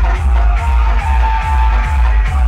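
Loud dance music blasting from a DJ truck's large speaker stack, dominated by a heavy, pulsing bass beat.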